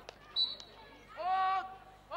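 A short, sharp umpire's whistle blast, the loudest sound, followed about a second in by a player's loud sustained shout.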